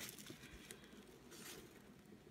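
Near silence, with a few faint taps and rustles of hands handling small items and tissue paper in a sewing box.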